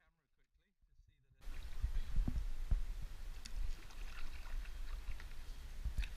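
Kayak paddling: water splashing and sloshing, with scattered knocks of paddle and hull and a low rumble on the microphone. It starts suddenly about a second and a half in, after a faint voice.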